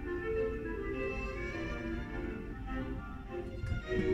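Orchestral string music playing on the car radio inside the cabin, with a low rumble from the car underneath.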